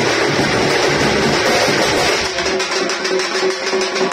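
Live band music with dense drumming from large bass drums and smaller side drums, an instrumental passage between sung lines of a Tamil oppari lament, with a held melodic tone over the drums in the second half.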